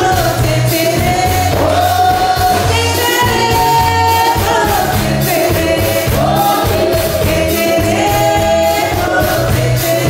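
Live salegy band: a woman singing lead over accordion and drum kit, with a steady driving beat.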